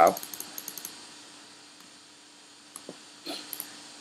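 A quick run of light clicks at the computer in the first second, then a faint steady hum, with a soft tick and a brief murmur near the end.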